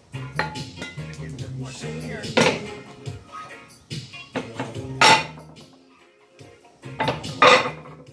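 Cast-iron weight plates clanking against each other as they are lifted off a plate rack: three loud metallic clanks with a short ring, over reggae music playing in the background.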